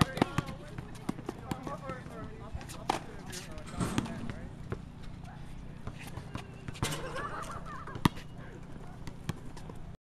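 A basketball bouncing on an outdoor hard court, with shoes on the court, giving irregular short knocks, the sharpest about eight seconds in. Indistinct voices come and go.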